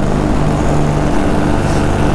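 Paramotor engine and propeller running steadily in flight, a continuous droning hum with a rush of noise over it.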